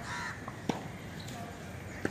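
A short bird call at the start, then one sharp tennis-ball hit about two-thirds of a second in.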